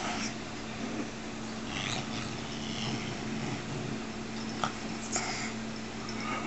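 A very large house cat snorting and snuffling while it eats a slice of deli ham, in short breathy bursts, the clearest about two seconds in and near the end.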